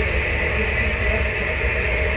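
Steady hiss of french fries deep-frying in a large pan of hot oil, with a low steady rumble underneath.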